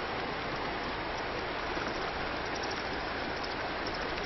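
Shallow river running over stones: a steady rush of water.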